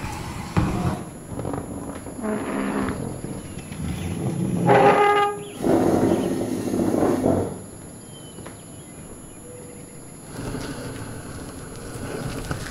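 Sound-effect intro with rumbling, clattering noise and a short pitched blast about five seconds in. It drops to a quieter low ambience at around eight seconds and picks up slightly near the end.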